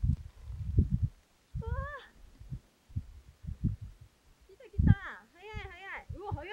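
Low, irregular gusts of wind buffeting the microphone. Over them come brief high, wavering voices: one short call about two seconds in, and a longer run of them near the end.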